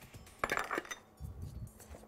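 A brief clink of kitchenware about half a second in, followed by faint handling knocks.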